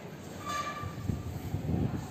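A brief, steady horn-like tone about half a second in, followed by a low rumble.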